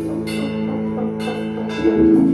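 A small live 90s-style R&B band plays an instrumental passage on piano, electric bass, bowed cello, trombone and drum kit. Sustained low chords ring through it, with two drum and cymbal hits about a quarter second in and near the end.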